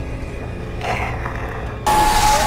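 Suspense soundtrack of a TV drama: a steady low rumbling drone, a rushing swell about a second in, and a sudden loud hit of noise near the end.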